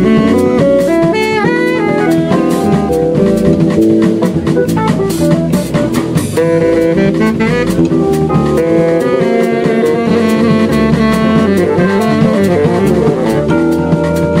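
Live small-group jazz: a tenor saxophone playing melodic lead lines with some pitch bends, over piano on a stage keyboard, electric bass and a drum kit with busy cymbals.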